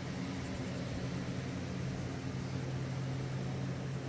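Steady low machine hum at one constant pitch, over a faint hiss.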